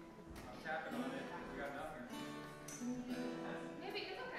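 Acoustic guitar being strummed, with a voice talking over it.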